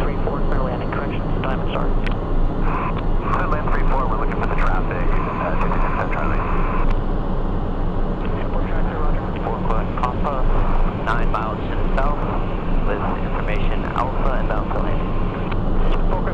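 Cessna Citation 501 cockpit on approach: the steady low drone of the jet's engines and airflow, with voices talking over it through most of the stretch.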